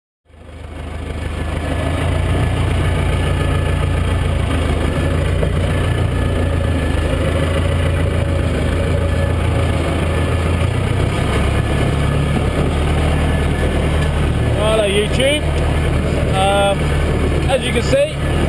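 Massey Ferguson 590 tractor's four-cylinder diesel engine running steadily, heard from inside its cab as it drives across the field with a round bale on the front loader. The sound fades in over the first second or two.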